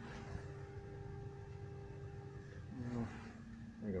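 Velleman Vertex K8400 3D printer giving a faint, steady hum with a few thin whining tones as it prepares to start printing.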